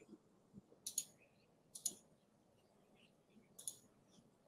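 Three faint, sharp computer mouse clicks, the first two about a second apart and the last near the end, over quiet room tone.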